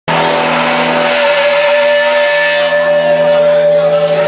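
Live blues band's amplified instruments holding one long sustained chord, several steady notes ringing without change.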